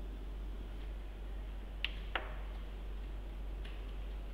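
Two light, sharp clicks about a third of a second apart a little before halfway, and a fainter one near the end, over a steady low hum.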